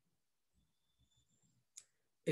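Near silence, with one faint, sharp click of a computer mouse button near the end.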